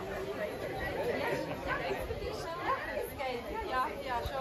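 Several people talking at once: the overlapping chatter of a group of guests, with no single voice standing out.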